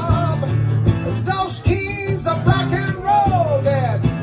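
A man singing live over his own strummed acoustic guitar, the strums keeping a steady rhythm. Near the end he holds one long note that slides downward.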